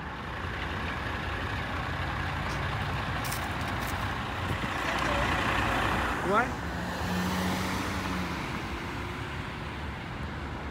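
Road traffic with a dump truck's diesel engine running as it passes, a steady low rumble throughout. A quick rising chirp sounds about six seconds in, followed by a low drone lasting a second or two.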